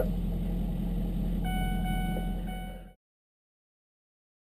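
Vehicle engine idling with a steady low hum inside the cab. About a second and a half in, a steady electronic tone joins it. The sound then fades out to silence about three seconds in.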